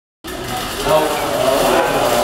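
Several voices chattering at once, with one exclaiming "Oh" about a second in.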